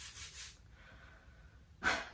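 A hand rubbing back and forth over the rough, scratchy-textured cover of a book, about four strokes a second, stopping about half a second in. A short breath comes near the end.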